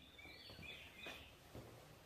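Faint bird chirping, a few short calls in the first second or so, with a couple of light knocks.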